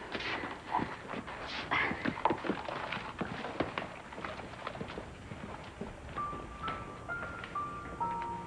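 Footsteps on a wooden floor, irregular knocks of people walking away. Soft background music with held notes comes in about six seconds in.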